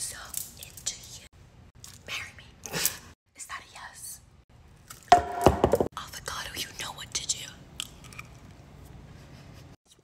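Whispering, with quiet handling and chewing sounds as an avocado is handled and tasted from a spoon; one brief louder voiced sound about five seconds in.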